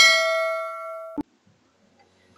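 A bell-like ding sound effect for a notification-bell button: struck once, then ringing and fading, cut off suddenly with a click just over a second in.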